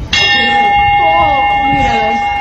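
A single loud, bell-like metallic clang that strikes suddenly and rings on with a steady tone, with fainter wavering, falling tones underneath. It marks a gas cylinder hitting a man's head.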